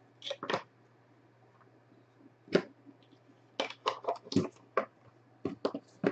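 Cardboard trading-card box and a stack of thick cards being handled: scattered short clicks and snaps, a pair near the start, one alone in the middle and a quick run of them in the second half.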